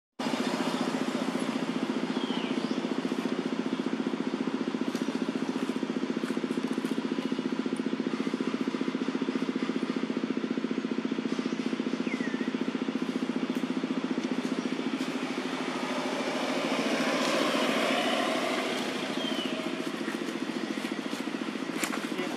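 An engine running steadily with a fast, even pulse. A louder rush of noise swells over it about three-quarters of the way through, and a few short high chirps sound now and then.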